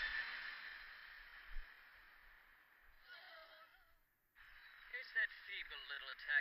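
Anime soundtrack: a noisy, hissing magic effect that fades away over about four seconds, then faint character dialogue starting about four and a half seconds in.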